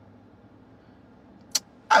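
Faint, steady low hum in a car's cabin, with one short, sharp click about one and a half seconds in; a man starts speaking right at the end.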